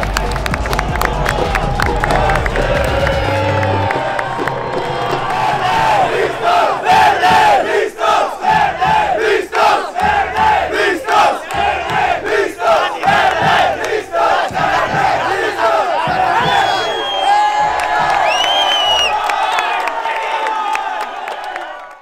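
Crowd of football supporters chanting together in time with a steady beat. A low music bed ends about three seconds in.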